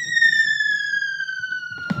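A falling-whistle sound effect: one whistle tone gliding slowly down in pitch, the comic cue for something dropping, here a camera falling off a kitchen counter. A crash starts just at the end.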